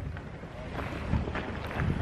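Wind buffeting the microphone outdoors, a steady low rumble with some rustle above it.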